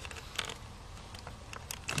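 Plastic wiring-harness connector being pushed onto a car's blower motor resistor: a few faint scrapes and small clicks, with a click near the end as the connector latches in place.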